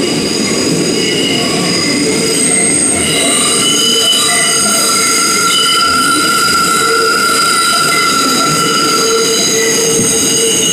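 R142 New York subway car running on the rails, heard from inside the car: a steady low rumble with its steel wheels squealing in several high, drawn-out tones against the rails.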